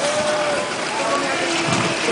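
Steady rolling hiss of a group's roller-skate wheels on pavement, with voices talking in the group.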